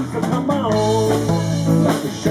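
Live rock'n'roll band playing on electric guitars, bass and drum kit, in a short gap between sung lines.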